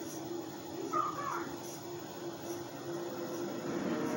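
A steady low hum, with one short call about a second in.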